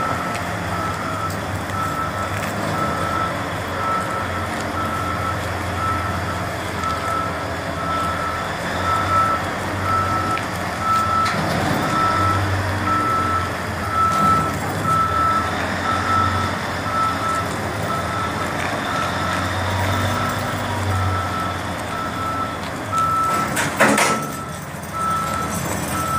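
Backup alarm beeping steadily, about once a second, over the diesel engine of a Caterpillar 988B wheel loader running as it moves slowly while carrying a load. A single sharp clank comes near the end.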